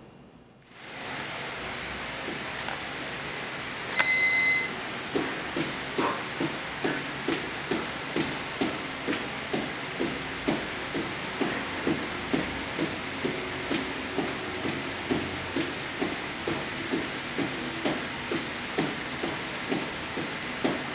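Running shoes tapping a tile floor in quick alternation during mountain climbers, about two taps a second, over a steady hiss. A single loud electronic beep about four seconds in marks the start of the exercise interval.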